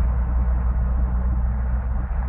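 A steady low rumble with a faint hiss above it, the background ambience of a radio-drama scene.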